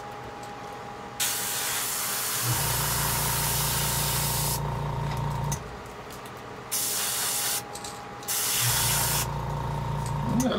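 An airbrush sprays yellow acrylic paint onto a jerkbait lure in three bursts of hiss. The first burst lasts about three seconds, and two shorter ones follow near the end. A low hum comes and goes underneath.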